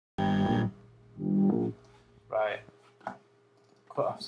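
Two short, loud synth bass notes from a Logic ES2 software synthesizer, about a second apart, with no wobble yet. A few words of speech follow.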